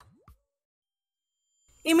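A short 'plop' sound effect whose pitch sweeps quickly upward, then near silence; narration starts right at the end.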